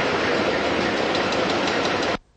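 Steady noise of factory machinery on a production line, with a faint rapid ticking in the second half.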